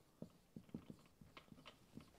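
Faint marker pen writing on a whiteboard: a quick, irregular run of short squeaks and taps as each letter is stroked out.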